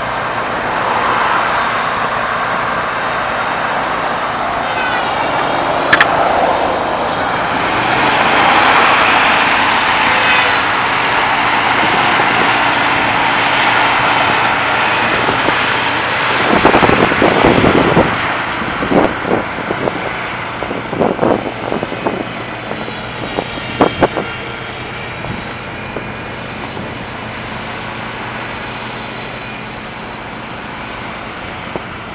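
Passing road traffic, its noise swelling and fading over several seconds. In the second half, wind gusts on the microphone knock it several times.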